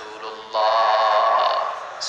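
A man's voice chanting one long, steady held note in a sung, melodic sermon delivery, starting about half a second in.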